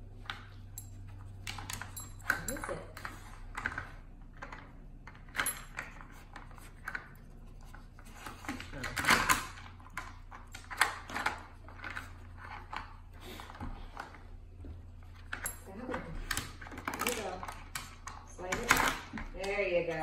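A dog working a plastic treat puzzle with her nose: irregular light clicks and clatters of plastic sliders and lids knocking in the tray, a few louder knocks among them, with a faint metallic jingle of collar tags.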